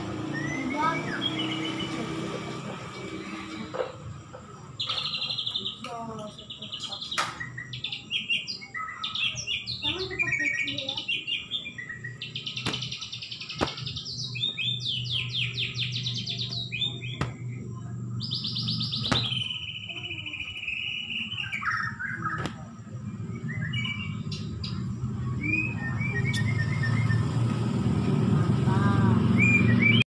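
White-rumped shama of the Bahorok type singing a varied song of quick chips and trills, with loud rattling phrases around the middle and one long held note that slides down in pitch. In the last seconds the song thins to a few short calls under background chatter.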